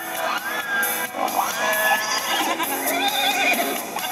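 A horse whinnying over light background music, played through a laptop's speakers.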